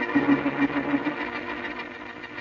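Organ music bridge between scenes of an old-time radio drama: a held chord with a fast pulsing tremolo, fading away toward the end.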